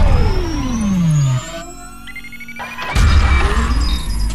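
Synthesized music and sound effects: a tone sweeping steadily down in pitch over a heavy low rumble for about a second and a half, then a quieter stretch, then a sudden loud low boom about three seconds in.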